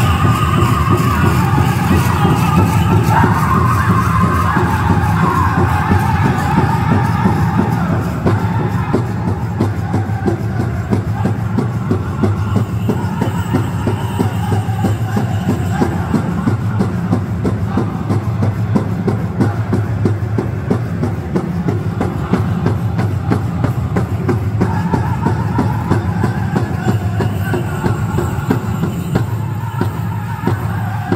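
A powwow drum group beating a big drum in a steady, even rhythm while the singers sing. The singing is loudest in the first several seconds and again near the end.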